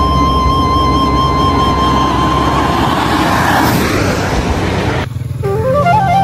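Background music: a long held melody note over a low bass pulse, joined by a rising noise swell that cuts off suddenly about five seconds in, after which the melody steps up to a new note.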